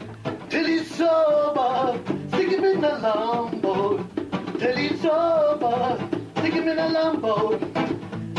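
A man singing a folk song in a full voice, holding and bending long notes, to his own strummed steel-string acoustic guitar.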